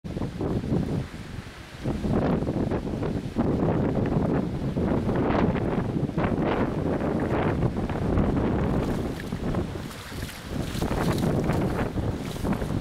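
Gusty tropical-storm wind buffeting the camera microphone, a rumbling noise that rises and falls with the gusts.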